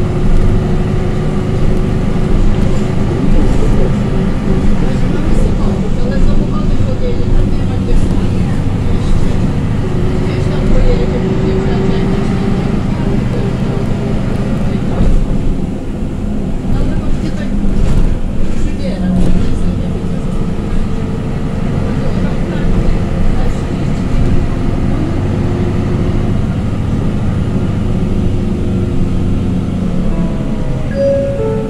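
Inside a MAN NG313 articulated bus under way: the MAN D2866 inline-six diesel running steadily and the ZF 5HP592 automatic gearbox whining, the whine's pitch shifting with road speed. The level dips briefly about halfway.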